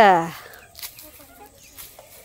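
A domestic chicken clucking: one loud call falling in pitch right at the start, then only faint sounds.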